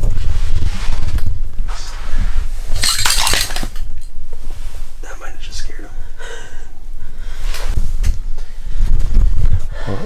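Muffled sound from a camera held in the water of an ice-fishing hole: heavy low rumble of water moving against the housing, with a burst of knocking and clatter about three seconds in and indistinct muffled voices.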